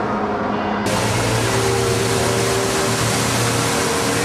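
Fountain water splashing as a steady rushing hiss, starting abruptly about a second in, with a low steady hum and a few held tones underneath.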